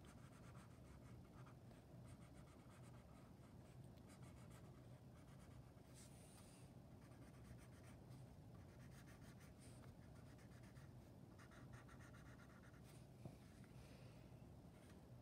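Faint scratching of a felt-tip marker colouring on paper in short, irregular strokes, over a low steady hum.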